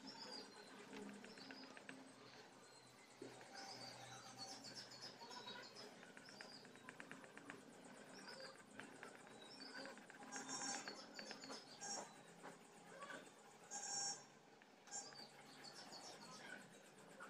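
Faint, repeated chirps of birds in the background, with quiet scratching of a colour pencil shading on paper.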